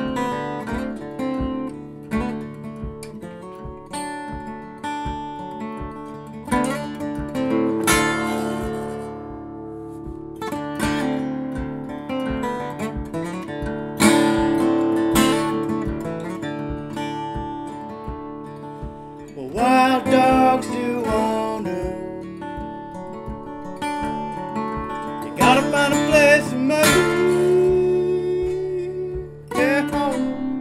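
Steel-string acoustic guitar played fingerstyle: picked melody notes over a steady pulse of thumbed bass notes, an instrumental song introduction.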